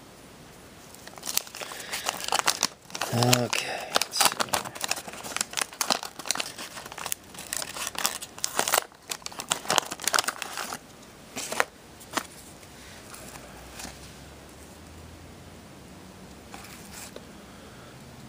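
Wax-paper wrapper of a 1985 Garbage Pail Kids trading-card pack crinkling and tearing as it is torn open and the cards are pulled out. The crinkling runs in a dense burst over the first ten seconds or so, then stops.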